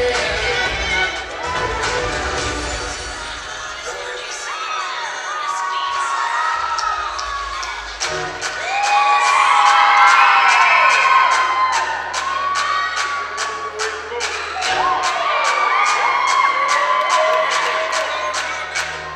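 Audience cheering loudly over hip-hop dance music with a steady beat; the cheering swells to its loudest about halfway through.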